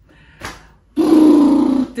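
A woman's wordless vocal sound, held at one steady pitch for about a second in the second half, after a brief soft sound.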